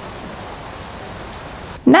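A steady, even hiss like falling rain, holding at one level, cut off near the end as a woman's voice begins.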